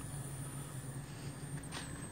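Boiler's blower ring running, a steady low rush of forced draft through the burning wood in the firebox.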